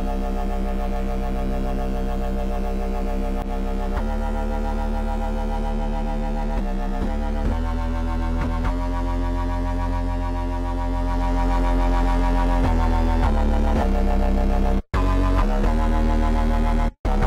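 Xfer Serum software synth playing a heavy drum and bass roller bass patch: deep sustained bass notes thick with upper harmonics, changing pitch every few seconds, through the synth's tube distortion as it is being dialled in. It gets louder about 11 seconds in and cuts out briefly near the end.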